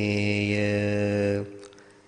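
A Buddhist monk chanting Sinhala meditation verses in a slow, steady monotone, holding the last syllable of a line for about a second and a half before it trails off.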